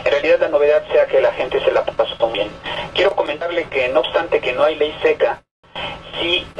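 Speech over a telephone line, with a brief dropout near the end.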